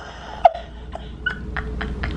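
Short, breathy bursts of laughter, with a sharp louder burst about half a second in.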